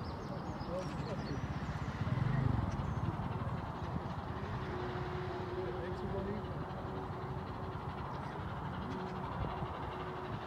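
Steady outdoor background noise by a railway line, with faint voices. A low rumble swells briefly about two seconds in, and a steady hum comes in about halfway through.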